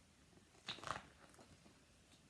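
Brief rustle and crackle of paper as the pages of a large picture book are handled and turned, with a few faint ticks after.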